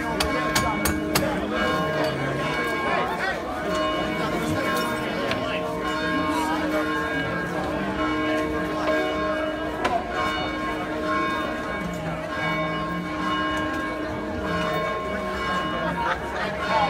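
A bell rings steadily on and on, its tones swelling and fading every few seconds, over crowd chatter. A few sharp clicks come in the first second.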